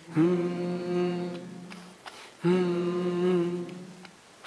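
Voices chanting a long held note on one steady pitch, twice, each lasting a little under two seconds and dying away, with a short breath between them.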